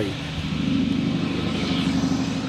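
A motor vehicle's engine running, a steady low drone with road noise.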